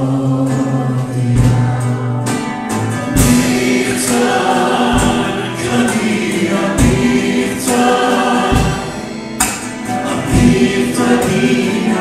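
Live Christian worship song: several voices singing together into microphones, accompanied by acoustic guitar, with a low drum beat about every second or two.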